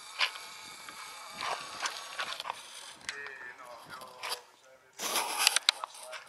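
Indistinct voices of people talking, too faint or distant to make out words, over a faint steady hiss. A short loud burst of noise comes about five seconds in.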